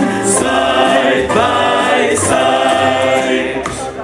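Male vocal ensemble singing into microphones in close harmony, holding the song's final phrase, which ends just before applause begins.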